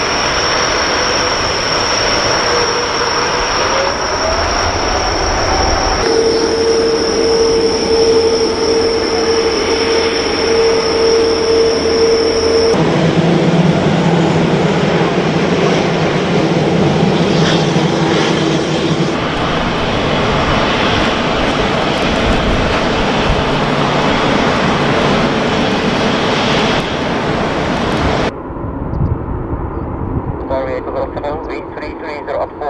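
Airbus A350 jet engines running at high power on the runway: a loud, steady rush with a high whine, cut abruptly between several aircraft.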